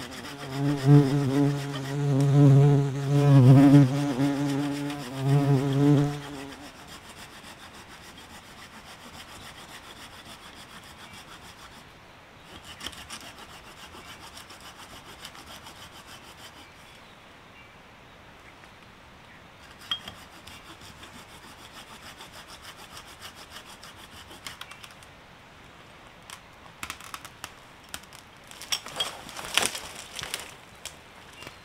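A bumblebee buzzing loudly close by for the first six seconds or so, its pitch wavering as it moves. Then a hand saw cutting a dead branch, a faint steady scraping, with a run of sharp cracks of breaking wood near the end.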